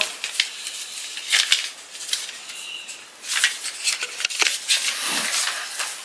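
Paper rustling and crinkling, with scattered small ticks, as a greeting card is handled and taken out of its envelope.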